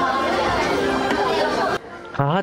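Crowd chatter: many people talking at once in a queue, cutting off abruptly near the end.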